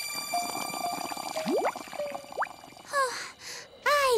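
Cartoon bubble sound effects: two quick rising bloops, about a second and a half and two and a half seconds in, over quiet music with held notes. Near the end come two short breathy gasps.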